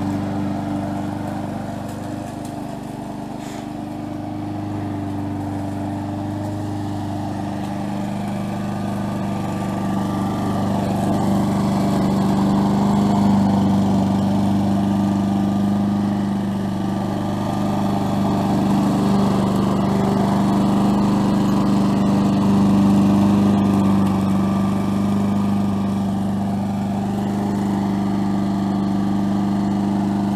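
Single-cylinder engine of a gas walk-behind push mower running steadily at mowing speed as it cuts grass, a constant engine note that grows somewhat louder after the first few seconds.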